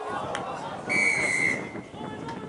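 Rugby referee's whistle: one steady, shrill blast of well under a second, starting about a second in, over players' shouts and voices.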